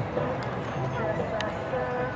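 Indistinct conversation, with a single sharp click about one and a half seconds in.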